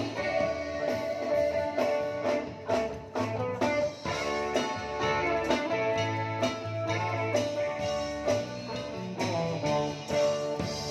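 A live band playing on stage: electric guitars over a drum kit, with a steady beat of drum strikes.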